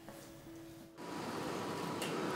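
Faint room tone, then about a second in a steady background hum of a commercial kitchen begins, even like running ventilation fans, with a faint thin whine in it.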